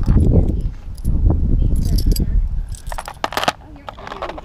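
Metal costume jewelry jangling and clicking as pieces are picked up and sorted on a plastic tray, with a cluster of sharp clicks about three seconds in.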